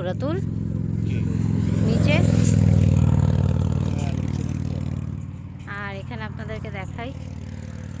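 A motor vehicle passing close by, its engine growing louder to a peak about three seconds in and then fading away.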